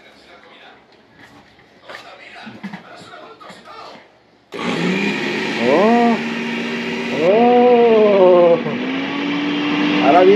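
New Midea countertop blender switched on with its jar empty: the motor starts suddenly about four and a half seconds in and runs steadily with a whirring hum that steps up slightly in pitch near the end. A voice calls out twice over it.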